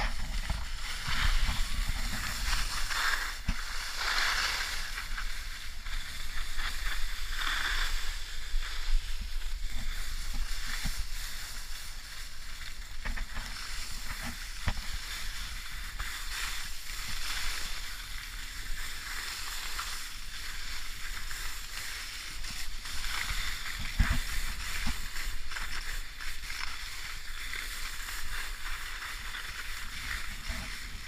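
Skis sliding and scraping over snow, a hiss that swells and fades with each turn, with wind rumbling on the camera's microphone and a few knocks.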